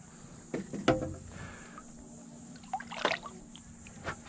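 Water splashing and dripping as a hooked redfish is grabbed by hand at the boat's side and lifted out, in a few brief splashes over a low background.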